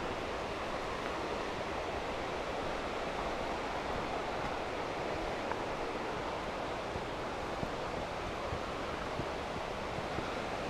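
Steady, even rushing of a creek's flowing water.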